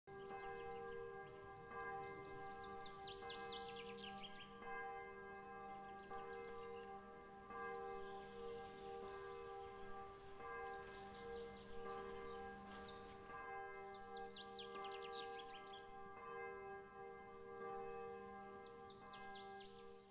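Faint church bell ringing, its tones hanging on steadily, with birds chirping now and then.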